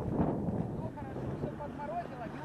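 Wind buffeting the microphone, with faint voices calling from further off and a steady low hum of a vehicle engine running.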